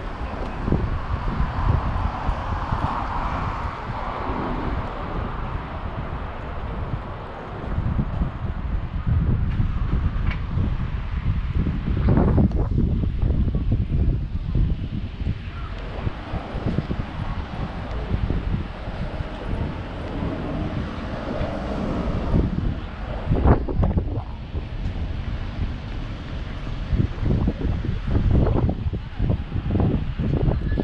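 Wind noise on the camera microphone, a gusty low rumble, over city street sound with road traffic.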